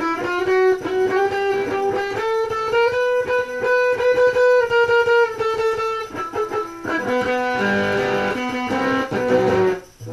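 Dean Vendetta 1.0 electric guitar played through a small Crate GX-15 practice amp: a picked single-note line with long held notes, moving to lower notes about seven seconds in and breaking off just before the end.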